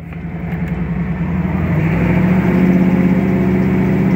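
The 1967 Camaro's fuel-injected 6.0-litre V8 pulling under acceleration. It starts quieter, grows louder over the first two and a half seconds or so, then holds a steady drone.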